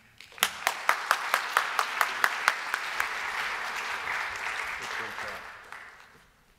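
Audience applauding. It starts about half a second in, with one person's sharp claps close by at about four to five a second standing out for the first two seconds, then settles into an even patter that dies away near the end.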